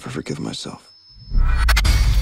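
Trailer music: a sung "got me" vocal over a thin steady high tone, a brief drop-out, then a sudden heavy bass boom with a crackling hit about a second and a half in that stays loud.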